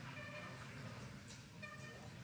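Faint hall ambience with two short, faint pitched calls, about a second and a half apart, like a distant voice.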